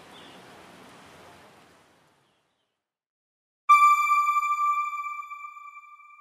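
Faint background noise fades out, then after a short silence a single bright bell-like chime strikes about three and a half seconds in and rings away over a couple of seconds: an end-card sound logo.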